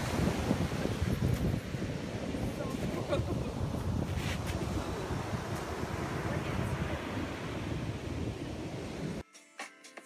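Wind buffeting the microphone over ocean surf breaking on the beach. About nine seconds in it cuts off suddenly and background music begins.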